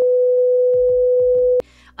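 A loud, steady electronic test tone, one pure mid-pitched note held for about a second and a half and then cut off abruptly: the stand-by beep played over colour bars.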